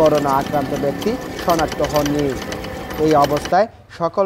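A man's voice narrating over a low, steady rumble of background noise. Both cut out briefly near the end.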